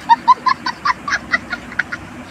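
A comic sound clip edited in: a rapid run of short, high, honking squeals, about five a second.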